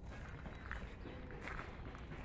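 Faint footsteps on a gravel path, a few soft crunches against a low background rumble.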